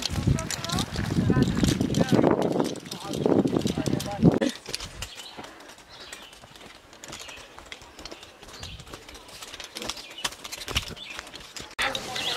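Footsteps on an asphalt path with rustling and faint voices, loudest in the first four or five seconds. Then a quieter outdoor background with scattered small clicks.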